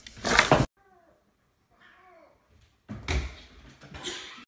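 A cat meowing twice, short and faint, about a second apart. Loud bursts of noise come at the start, ending abruptly, and again near the end.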